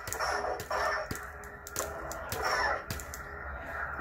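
Lightsaber hilt's smooth-swing soundboard humming through its small speaker, with swells that rise and fall in pitch as the blade is swung. A few sharp clicks come in between.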